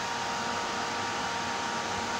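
Steady whirr of an egg incubator's air-circulation fan, with a faint steady high note running through it.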